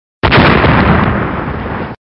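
A big, loud splash as both hands slap hard down into the water of a small paddling pool. It starts suddenly about a quarter of a second in, dies down gradually as the water falls back, and cuts off sharply near the end.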